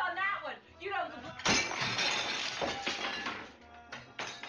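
A china dinner plate thrown and smashing about one and a half seconds in: a sudden loud crash, then shards clinking and settling as it dies away over about two seconds.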